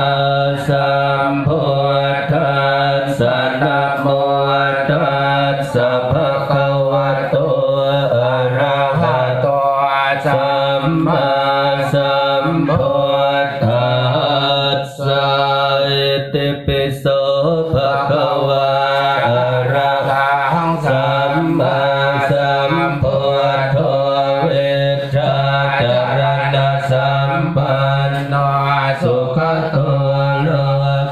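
Buddhist chanting in Pali: a steady, low, near-monotone recitation that runs on without a break, typical of a merit-making ceremony.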